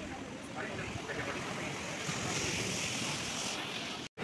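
Small sea waves washing in over rocks at the shoreline: a steady wash of surf that grows a little louder about halfway through.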